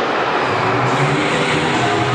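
Steady, loud rushing noise just after the bang of a circus clown-car gag, as smoke pours from the rear of the trick taxi.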